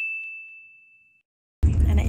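A single high bell-like ding sound effect, from the subscribe animation's bell icon, rings and fades away over about a second. Near the end it gives way to the steady low rumble inside a moving car.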